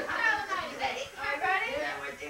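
Indistinct voices of people talking in a room.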